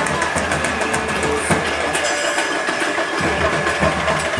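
Street procession din: vehicle engines idling and running amid a crowd, with scattered short clicks and knocks.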